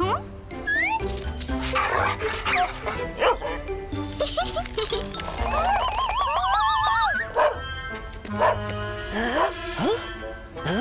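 Playful cartoon background music with short, whistle-like rising glides and wordless character vocal sounds. About five and a half seconds in, a long wavering, wobbling tone runs for about two seconds.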